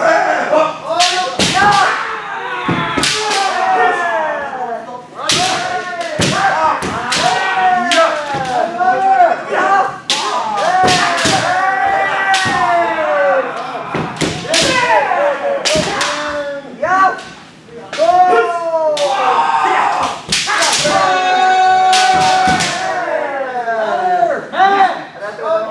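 Kendo practice: many players' kiai shouts rising and falling over one another, cut by repeated sharp cracks of bamboo shinai striking armour and feet stamping on the wooden floor.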